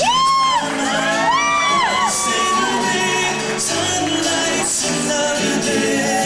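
A live band playing on stage with guitar, keyboards and drums, recorded in a large hall. In the first two seconds a few high notes slide up and back down over the band.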